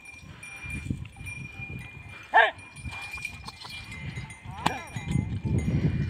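Bells on a pair of Ongole bulls ringing steadily as the bulls pull a wooden-wheeled cart, with the rumble of the cart and hooves growing louder near the end as the team comes closer. A short shouted call to the bulls cuts in about two and a half seconds in, and a fainter one near five seconds.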